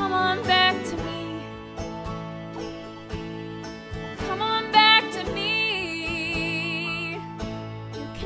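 A woman singing a country-style show tune over acoustic guitar accompaniment, holding one long note with vibrato in the middle.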